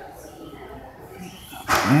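A dog barks once, short and loud, near the end, over faint background noise.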